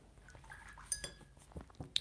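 A light clink of hard painting supplies being handled, with a brief high ring about a second in, followed by a few soft taps and clicks.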